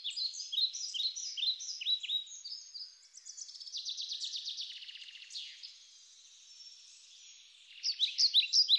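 Songbirds chirping and singing: a run of short, quick chirps, then a fast trill around the middle, fading to faint near the end.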